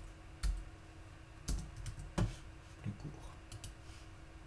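Computer keyboard keystrokes: a handful of separate key presses at an irregular pace, three of them louder, as a line of code is edited.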